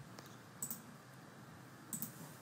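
Two faint computer mouse clicks, one about half a second in and one near the end, over quiet room tone.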